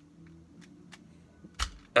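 Small plastic clicks from a Transformers Masterpiece MP-30 Ratchet figure as its wheels and parts are folded by hand. There are a few faint clicks and one louder click about one and a half seconds in.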